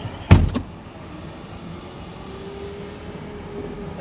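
City street traffic noise with one loud, sudden thump about a third of a second in, followed by a weaker knock, and a faint steady hum in the second half.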